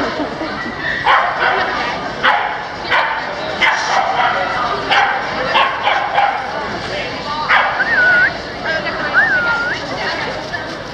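A dog barking in a string of short sharp barks, one or two a second, over the chatter of people. Near the end come a few short, high squeals that rise and fall.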